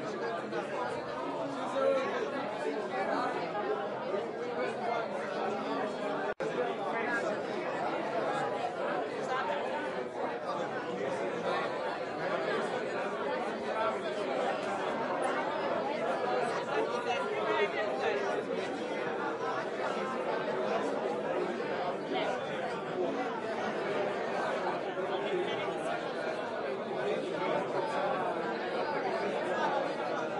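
Crowd chatter: many people talking at once in a large room, a steady hum of overlapping conversation with no single voice standing out. The sound cuts out for an instant about six seconds in.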